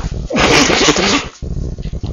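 A man sneezing once: a single loud, noisy burst of about a second, starting just under half a second in.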